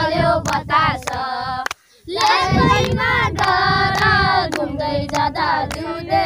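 Children singing a song, with hand claps keeping time at about three a second; the singing breaks off briefly just before two seconds in, then carries on.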